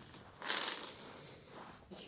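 Ballpoint pens being pushed by hand across a soft surface, a rustling scrape that starts about half a second in and trails off.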